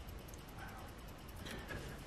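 Quiet room tone with a faint steady low hum; no distinct sound stands out.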